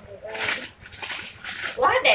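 Brief bits of a person's voice with a quieter gap between them.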